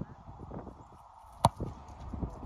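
An American football kicked off a tee: a single sharp thud of the foot striking the ball about one and a half seconds in, after a few soft approach steps on grass.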